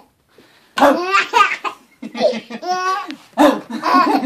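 A baby laughing in repeated bursts, beginning just under a second in after a short quiet.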